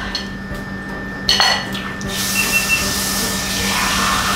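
A plate clinks once as it is set down on a tiled floor, about a second in. Then, from about halfway, a tap runs steadily, drawing water at the sink.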